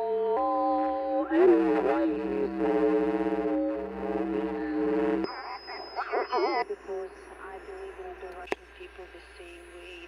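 Shortwave broadcast audio from a homemade MiniSDR receiver on its loudspeaker, being tuned across the 25 m band. Music with a voice plays until about five seconds in, then cuts off abruptly as the tuning steps. Warbling, off-pitch voice sound follows, typical of a sideband signal being tuned through, then a weaker, hissy signal with a single click near the end.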